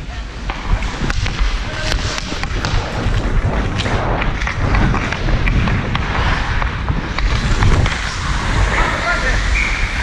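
Ice hockey skate blades scraping the ice and a stick clicking against the puck as the skater carries it up the ice, with a steady low rumble of moving air on the helmet-mounted camera's microphone.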